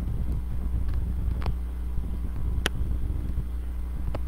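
Steady low background rumble with no speech, broken by two short sharp clicks about a second apart around the middle.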